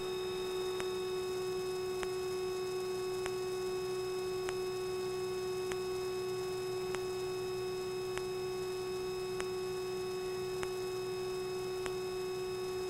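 Steady electrical hum on the aircraft's intercom audio: one unchanging pitch with faint overtones, and faint ticks a little over once a second.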